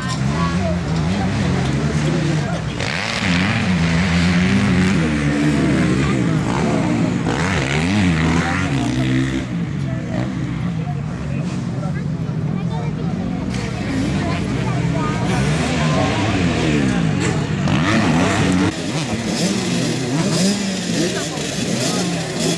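Several 65cc two-stroke minicross bikes idling and revving at the starting gate. Their engine notes rise and fall and overlap one another.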